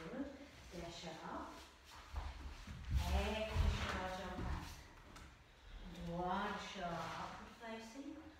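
Speech: a woman's voice in two stretches, about three seconds in and again about six seconds in, with quieter gaps between.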